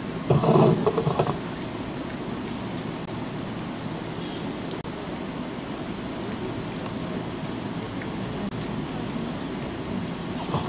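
Steady hiss of room noise, with a brief louder sound about half a second in.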